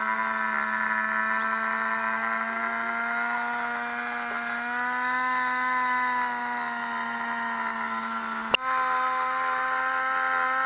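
Small hand-held petrol engine running steadily at high speed, its exhaust piped through a hose into a rat hole. A single sharp knock comes about eight and a half seconds in.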